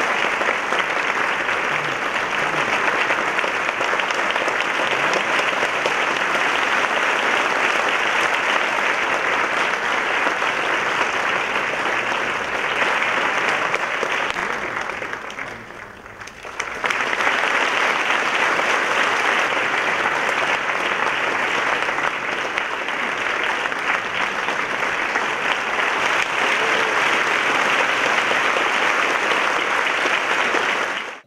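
Large audience applauding steadily. About halfway through, the applause dies away briefly, then comes back at full strength.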